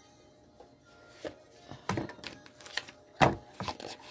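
A deck of cards being handled: a run of irregular sharp clicks and taps as the cards are picked up and shuffled, the loudest about three seconds in.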